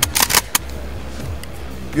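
Pump-action shotgun (Sar Arms M204) having its action worked by hand: a quick run of sharp metallic clacks in the first half-second as the fore-end is cycled.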